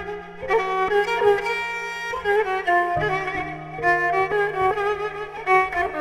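Kamancha, the Azerbaijani bowed spike fiddle, playing a slow melody of bowed notes with vibrato. A sustained low accompaniment note sounds underneath and steps down about halfway through.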